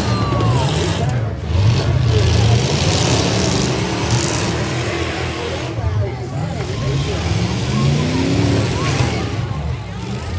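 Pickup truck engines revving and running unevenly as the derby trucks maneuver, one climbing in pitch near the end, with voices mixed in.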